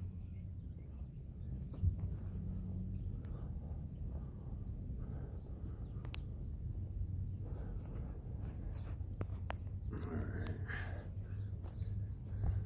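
Footsteps on dry grass and patchy snow, with soft rustling and occasional light clicks over a steady low hum.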